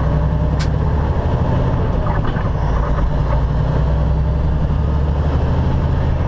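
Semi truck's diesel engine running steadily under way, heard from inside the cab as a constant low drone with road noise. One sharp click sounds about half a second in.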